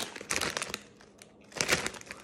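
A bag of Miss Vickie's potato chips crinkling as it is picked up and handled: two spells of rustling with a short pause between them.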